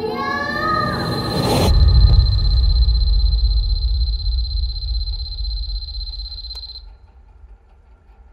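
A child's voice rising in pitch over a steady high ringing tone, cut off sharply a little under two seconds in by a loud, deep rumble. The rumble and the ringing fade out together about seven seconds in.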